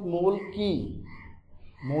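A man's voice speaking Bengali in a lecture, with drawn-out, sliding syllables and a short pause in the middle.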